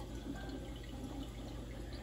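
Water circulating in a saltwater reef aquarium: a steady trickle with faint drips over a low, steady hum.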